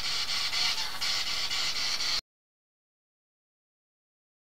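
Static hiss pulsing about four times a second, which cuts off abruptly to dead silence a little over two seconds in.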